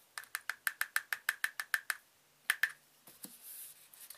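Plastic measuring spoon tapping against the inside of a small plastic container, about a dozen quick light taps at some seven a second, then a pause and two more taps, knocking the last of some fine glitter out of the spoon.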